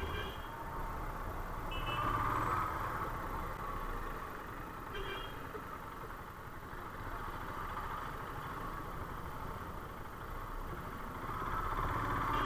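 Steady, fairly quiet engine and road noise of a motorcycle riding at cruising speed behind a jeep. Short high beeps come right at the start, about two seconds in and about five seconds in.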